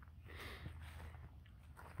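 Faint footsteps on dry fallen leaves.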